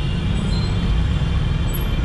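Road noise from a motorcycle moving slowly through dense city traffic: a steady low rumble with no distinct events.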